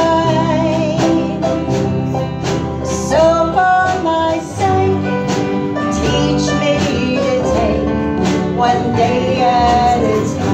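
Live country gospel band playing a slow song, with upright bass, drum kit, keyboard and electric guitar.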